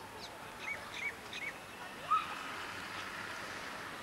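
Birds calling over outdoor background noise: three short chirps in quick succession, then one louder call about two seconds in.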